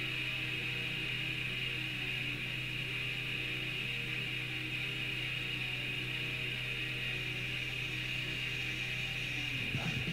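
Raw black metal demo recording off cassette: slow, sustained low notes over a steady bright hiss and a low hum, as a track's intro. Near the end the drums and full band come in fast.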